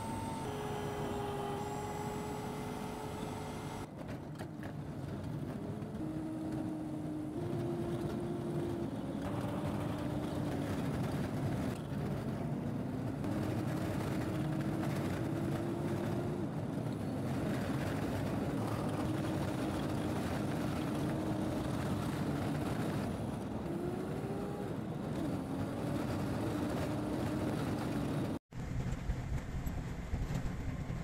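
Motor vehicle running on the road, heard from inside: a steady rumble of engine and road noise, with an engine note that slowly rises and falls in pitch as the speed changes. The sound cuts out briefly near the end.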